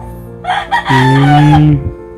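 A rooster crowing once, starting about half a second in and lasting just over a second, the loudest sound here.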